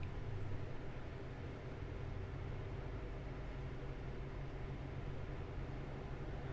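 Steady low background hum of the room, with no distinct sound.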